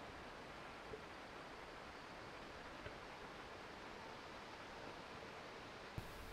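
Faint, steady background hiss with no distinct sound events, only one or two tiny ticks.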